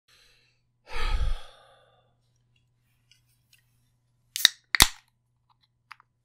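A man breathes out in a loud sigh close to the microphone about a second in. Near the end comes the tab of a metal drink can: two sharp cracks a split second apart as it is pulled open, then a small click.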